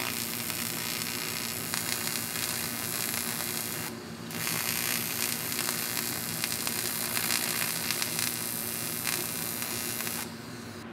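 AC TIG welding arc on aluminum: a steady buzzing hiss with a hum under it. It breaks off briefly about four seconds in, then starts again.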